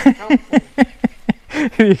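Men laughing: a run of short "ha" sounds, about four a second.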